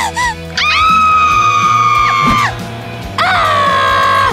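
Two women's long screams over steady background music, in a mock childbirth scene. The first is very high and held for about two seconds. The second comes about a second later; it is lower, lasts about a second, and falls in pitch at the end.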